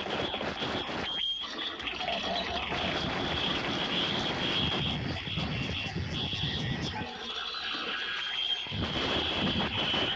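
Experimental noise-tape music: a dense, rumbling wash of noise with a steady high tone held over it. The low rumble drops away briefly about a second in, and again for about two seconds past the middle.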